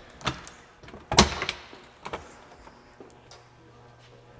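A metal side compartment door on an ambulance body being unlatched and swung open: a few sharp clicks, the loudest a clack a little over a second in.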